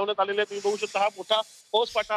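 A reporter's voice talking over a live news feed, with a high hiss laid over the speech for about a second in the middle.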